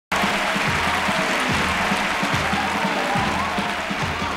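Audience applauding over the start of upbeat dance music, a bass drum thudding on a steady beat beneath the clapping.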